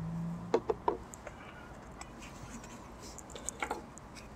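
A few light clicks and taps as a paper-wrapped PVC tube is handled over a spiral-bound book, with a low hum that fades in the first half second.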